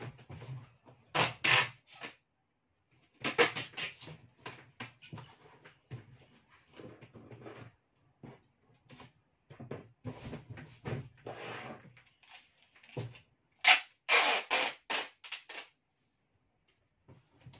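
Packing tape pulled off its roll and laid across a large cardboard box in several loud bursts: two about a second in, more around three to four seconds, and a run near the end. Quieter scraping and handling of the cardboard comes in between.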